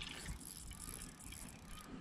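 Faint whirring and light clicking of a fishing reel being wound in against a hooked fish.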